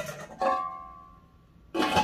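Granitestone Diamond non-stick pans knocking together. One is struck about half a second in and rings with a clear, bell-like tone that fades over about a second. Near the end a second, sharper clatter of cookware follows.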